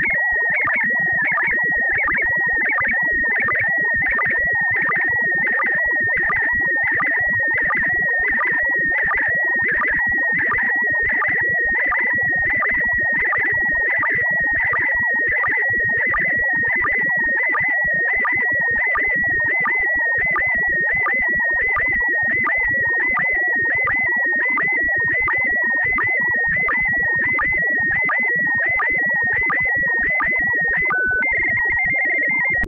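Steady, high electronic whistle just under 2 kHz with a slight warble, pulsing a little more than once a second over a rough buzz: a small homemade RF oscillator's signal heard as a tone on a radio receiver.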